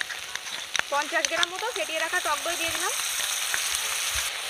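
Onion and spice masala sizzling steadily in hot oil in a kadai as curd is poured onto it. A voice is heard in the middle.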